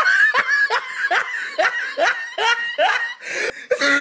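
A high-pitched voice laughing in a fast run of short rising 'ha' bursts, about three a second. It cuts off suddenly at the end, like an inserted laughing sound effect.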